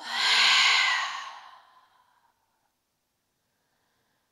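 A woman's deliberate open-mouth sigh, a long breathy exhale as part of a yoga breathing exercise. It is loudest at once and fades away over about two seconds.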